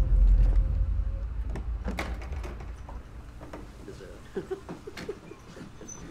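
Horror film trailer soundtrack: a deep low boom dies away over the first few seconds. A quiet stretch follows with a few sharp clicks and faint creaks.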